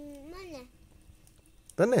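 A drawn-out, meow-like call lasting about a second, its pitch holding and then bending up and down, followed near the end by a child's loud spoken word.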